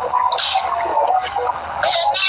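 Voices talking, heard through a phone livestream's narrow, compressed sound.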